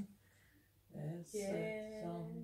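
An older woman singing unaccompanied. After a brief pause she comes back in about a second in, holding steady sung notes.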